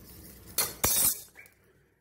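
Metal clinking against a metal pressure cooker: a short clatter about half a second in, then a louder, longer one with a brief ring.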